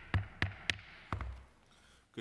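Gavel rapped several times in quick succession: sharp knocks, each with a low thud, about three a second, calling the hearing to order.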